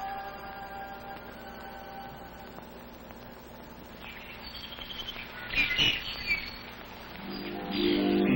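Soft film soundtrack music fading away, then birds chirping for a few seconds around the middle as the picture turns to morning, with music swelling back in near the end.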